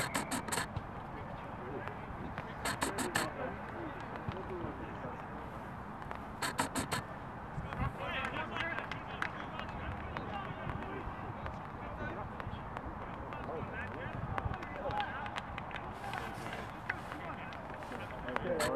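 Distant voices of rugby players and spectators calling across an open pitch. Three short runs of four or five quick sharp clicks cut through near the start, about three seconds in and about six and a half seconds in.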